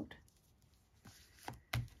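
Card-stock and paper pages of a handmade journal being handled: quiet at first, then two short sharp knocks of card on the book about a second and a half in, a quarter second apart, the second louder.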